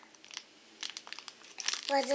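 Plastic candy packet crinkling in scattered crackles as it is handled, sparse at first and busier in the second half.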